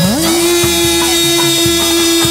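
Chầu văn (hát văn) ritual music: a long note slides up just after the start and is then held steadily, over the ensemble's repeating accompaniment with drums.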